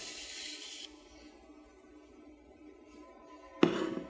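A soft hiss for about the first second as a metal rod is slid out from under a folded paper bill. Then faint room tone with a low steady hum, and a short loud sound near the end.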